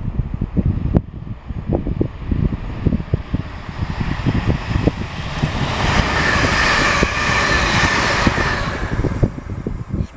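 Electric multiple-unit passenger train passing close at speed on the main line: its rushing wheel-and-rail noise with a faint high whine builds from about four seconds in, peaks as the carriages go by and fades near the end. Wind buffets the microphone throughout.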